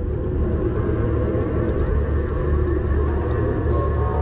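A steady low rumble with a fainter tone above it, swelled in just before and held at an even level: an ambience sound effect under a scene change.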